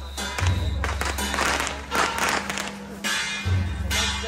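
Temple-procession percussion band playing: deep drum strikes about every second and a half, with clashing cymbals and gongs.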